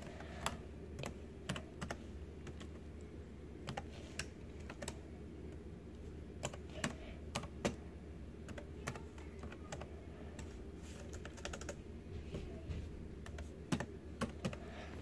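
Slow, uneven typing on a Dell laptop keyboard: single keystrokes spaced apart, with a few quicker runs of keys near the end.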